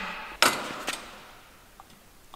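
A sharp metallic clack about half a second in, echoing through the big metal shop, then a lighter click: the GoPro mount breaking away from the neodymium magnet stuck to a steel pole.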